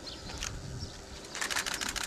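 Quiet open-air ambience of a large standing crowd, with a quick run of faint clicks about one and a half seconds in.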